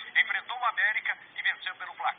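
Speech only: a reporter talking in Portuguese, reading out football results.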